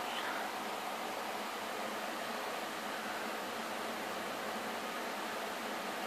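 Steady, even hiss of the recording's background noise, with no distinct sounds over it.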